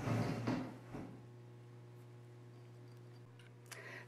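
Quiet room tone with a faint steady electrical hum, after a brief soft handling rustle in the first second.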